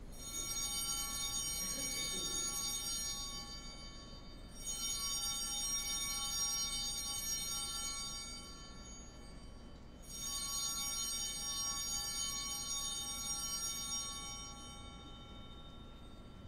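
Altar bells rung three times for the elevation of the chalice at the consecration, about five seconds apart. Each ring starts suddenly with many high, clear tones and fades slowly.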